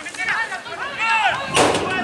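Rugby players shouting short calls during a scrum, with one sharp, loud burst of noise about a second and a half in.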